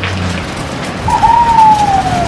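Ford van driving up across the parking lot, a steady rushing hiss with a low hum. From about a second in, a single long high note slides slowly down in pitch, like a drawn-out hoot or call.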